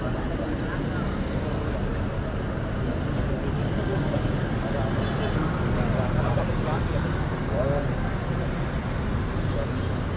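Street traffic running steadily past, with cars, a minibus and motorbikes, mixed with indistinct voices from a crowd.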